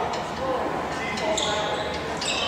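A volleyball bouncing on the hardwood floor of a large, echoing gym, among players' voices, with a short high squeak about one and a half seconds in.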